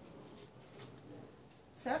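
Faint rubbing and rustling as hands handle the leaves and pot of a handmade artificial anthurium arrangement.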